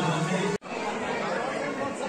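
Many people talking at once under a roof, a steady hubbub of crowd chatter. About half a second in, the sound cuts off abruptly and comes back; before the cut a devotional chant is still running.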